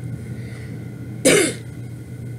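A woman gives a single short cough about a second and a quarter in, over a steady low hum.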